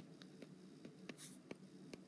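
Faint, irregular ticks of a stylus tapping and sliding on an iPad's glass screen while handwriting, about seven clicks in two seconds, with one short faint hiss about a second in.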